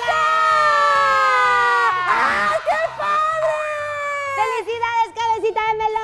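Excited high-pitched screaming of surprise: one long held cry that sinks slowly in pitch over about two seconds, then more shrieks and shouts.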